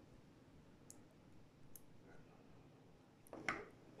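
Small magnetic spheres clicking faintly as they snap together between the fingers: a few light clicks, with a slightly louder one about three and a half seconds in.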